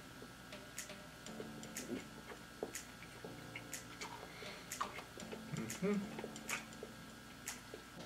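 A man quietly chewing a mouthful of burger, with soft wet mouth clicks and lip smacks and a short hummed "mm" about six seconds in. A sharp tick also repeats about once a second.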